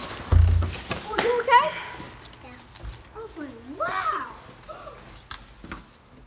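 Indistinct voices talking at moderate level, fading later on, with a short low thump about half a second in, like the phone being bumped or handled.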